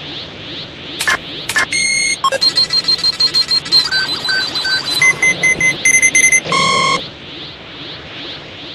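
Cartoon sound effects: a rapid run of short electronic beeps at several pitches, like a scanner readout, from about a second in until about seven seconds, over a steady pulsing, rushing energy-aura effect.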